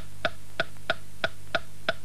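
Wooden pendulum metronome ticking evenly, about three ticks a second, over a low steady hum.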